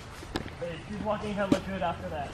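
Quiet talking, broken by two sharp clicks about a second apart.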